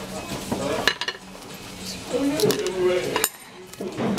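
Cafe dishes and cutlery clinking, a few sharp clinks about a second in and again in the second half, over a murmur of voices.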